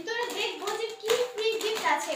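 Crinkly plastic snack packets rustling and slapped about by hands, with a few sharp taps, under a child's voice.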